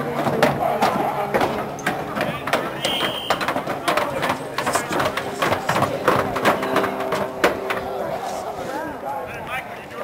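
Indistinct overlapping voices of players and sideline spectators at a lacrosse game, with frequent sharp clacks and a brief high tone about three seconds in.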